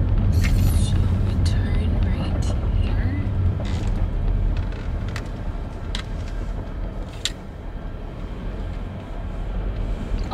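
Car interior road noise: a steady low rumble from the tyres and engine as the car rolls slowly, with scattered sharp clicks. It grows quieter in the second half.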